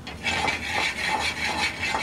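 Pureed garlic sizzling in olive oil in a stainless steel sauté pan on a gas burner, with a rough scraping as the pan is moved on the grate. The garlic is being lightly browned.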